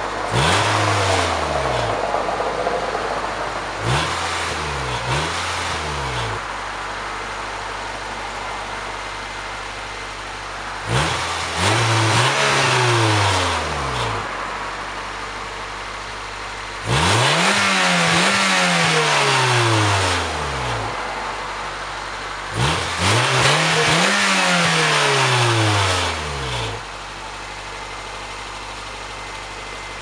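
A 1989 Toyota MR2's 4A-GE inline-four, heard at the tailpipes through a new OE-replacement exhaust, idling and free-revved while parked. There is a rev about a second in, two quick blips around four to five seconds, then three longer revs about six seconds apart, with idle in between. An exhaust leak is still present somewhere in the downpipe.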